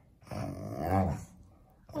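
A dog gives one low, drawn-out vocal sound, rising and then falling in pitch, while it squirms on its back on its bed.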